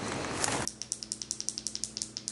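Outdoor background noise that cuts off abruptly, giving way to a quieter indoor background with a low steady hum and a rapid, even run of light clicks, about eight a second.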